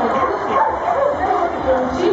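A dog barking over the chatter of people talking.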